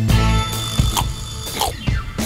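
Background music with a few short, sharp percussive hits.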